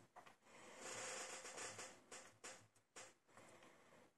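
Faint scraping and rustling, then four or five light clicks: metal tweezers handling the tiny pins and parts of a disassembled lock cylinder in a parts tray.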